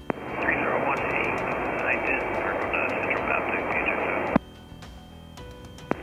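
Aviation VHF radio transmission heard over the cockpit intercom: a voice barely made out under heavy static hiss, thin and clipped like a radio. It opens abruptly and cuts off with a click after about four seconds, leaving a low steady intercom hum.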